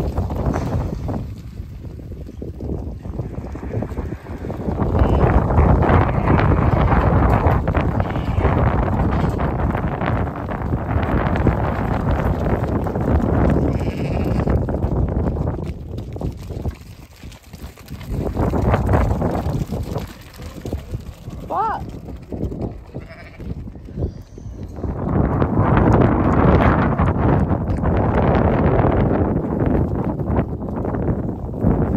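Freshly shorn sheep bleating as the flock runs out of the pen, over a loud, uneven rushing noise from the moving flock and the open air.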